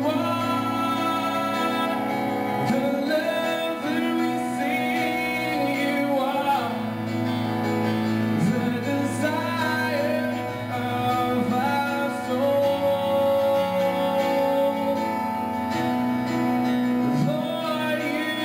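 A live song: a man singing into a microphone while accompanying himself on a Yamaha Motif XS8 keyboard, its held chords sustained under the voice.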